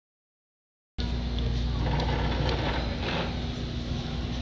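Steady low rumble and hum of the air in a large indoor exhibit hall. It cuts in suddenly about a second in, after dead silence.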